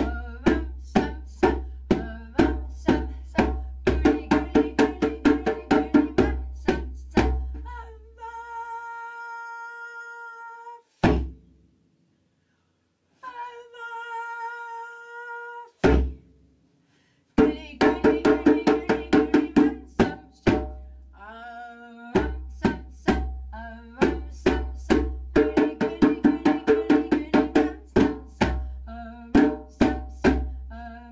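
Djembe played with bare hands in a fast, steady rhythm of about three hits a second. About eight seconds in it stops for two long held notes, each cut off by a single hard hit, then the drumming picks up again.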